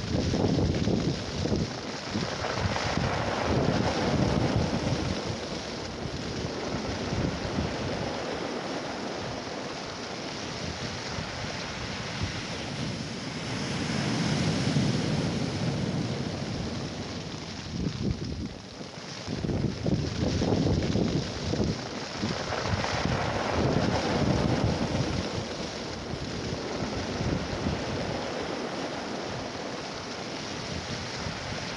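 Strong wind rushing over the microphone with waves breaking on the beach, swelling and easing several times.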